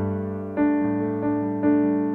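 Piano or electric keyboard playing slow chords, a new chord struck every half second or so, each ringing on and fading.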